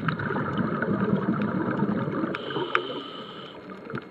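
Underwater recording: a loud rush of air bubbles passing the microphone, fading out about three and a half seconds in. Sharp scattered clicks sound throughout.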